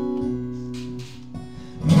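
Acoustic guitar strummed, its chords ringing on; the playing drops softer about a second in.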